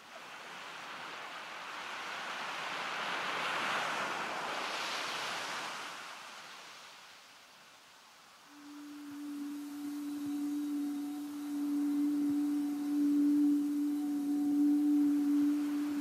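Ambient soundtrack: a soft rushing swell that rises and fades over the first several seconds, then a single steady low drone tone that comes in about halfway and holds.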